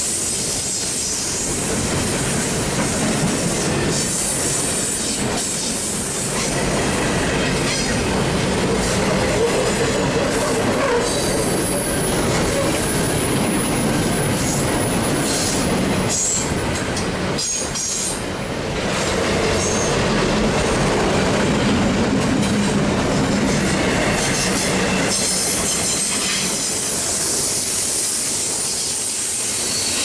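Union Pacific double-stack container train's loaded well cars rolling past on curved track: a steady rumble and clatter of steel wheels on rail. High-pitched wheel squeal from the curve comes and goes, plainest around the middle.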